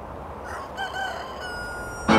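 A rooster crowing once over a soft outdoor ambience. The crow starts about half a second in and ends on a long held note.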